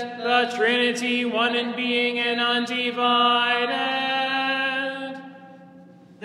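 Byzantine-rite liturgical chant: a sung line held on long, sustained notes that step up and down in pitch a few times. It fades away about five seconds in.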